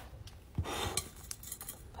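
Hands handling wig netting over a canvas wig head: a soft rustle a little over half a second in and a few small light clicks.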